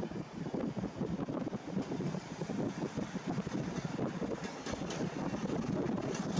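Travelling noise of a moving vehicle: an uneven rumble with hiss and some wind on the microphone.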